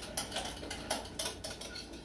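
A whisk beating liquid flan custard in a glass bowl, its wires clicking against the glass in quick, uneven light strokes that slow and fade toward the end.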